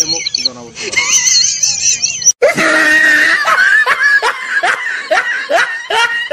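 A high, wavering squeaky sound, then after a sudden break about two seconds in, a run of evenly spaced laughing 'ha' bursts, about two to three a second.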